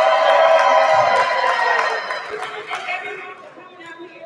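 Audience in a hall cheering and shouting, with some clapping, loudest in the first two seconds and dying down by about three seconds in.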